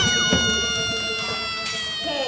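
Recorded brass fanfare ending on a long held chord that sags slightly in pitch as it fades out.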